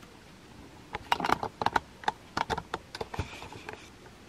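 Artificial carnation stem being pushed in among the dry twigs of a grapevine wreath: a quick, irregular run of small clicks and crackles starting about a second in.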